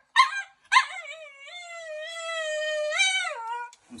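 Alaskan Klee Kai complaining loudly while being towel-dried: two short yips, then one long, high whining howl that lifts briefly near the end and drops away, the dog's 'talking' protest at being dried.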